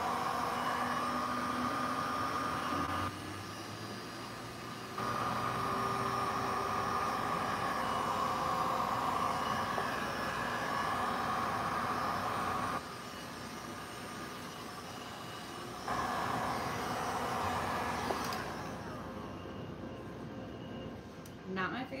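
Heat gun blowing hot air over wet epoxy resin to push the white wave into lacing. It makes a steady rushing hum with a whine at one pitch, drops in level twice for a couple of seconds each, and stops near the end.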